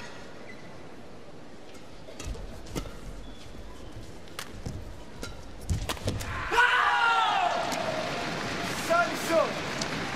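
Badminton rally: a string of sharp racket strikes on the shuttlecock, then about six and a half seconds in the arena crowd breaks into cheering and shouting as the rally ends.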